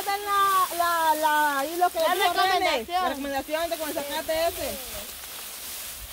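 A high-pitched woman's voice in long, drawn-out phrases for about five seconds. It gives way to a quieter rustling haze as people push through tall grass.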